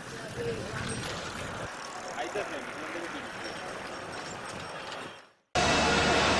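A group of bicycles rolling along a road with faint voices of the riders. It fades out about five seconds in, then cuts to a louder, steady mechanical drone of power-station turbine-hall machinery.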